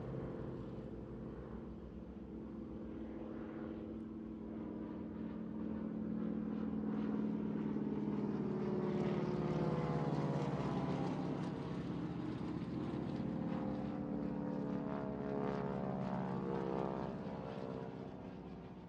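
Propeller aircraft engines droning: a low, steady drone that slowly swells and then eases off, as if passing overhead.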